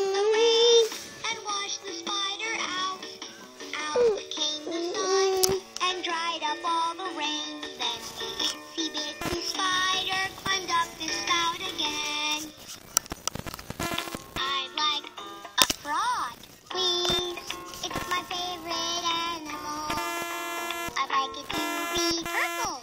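LeapFrog My Pal Violet plush puppy toy playing a children's song through its small built-in speaker: a recorded voice singing over electronic backing music.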